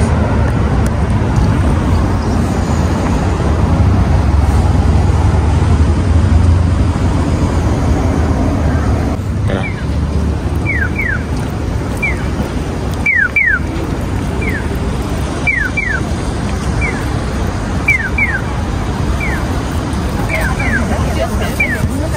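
Low rumble of traffic and wind on the microphone at a city crossing; from about ten seconds in, a Japanese pedestrian crossing signal sounds its electronic bird-like chirps, short falling 'piyo' tones alternating singly and in pairs, marking that the walk light is green.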